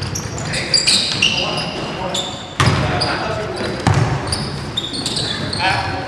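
Basketball game sounds on a hardwood gym floor: a ball bouncing with a few sharp thumps, and many short high-pitched sneaker squeaks as players cut and stop.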